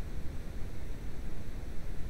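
Steady background noise, heaviest in the low end with a faint hiss above, unchanging throughout.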